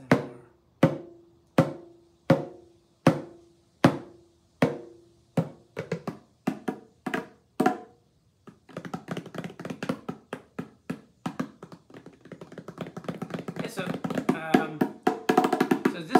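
Bongo drums played by hand. Single strokes come about every three-quarters of a second at first, each ringing with a short pitched tone. The strokes quicken, pause briefly about halfway, then break into a fast, dense flurry that grows louder toward the end.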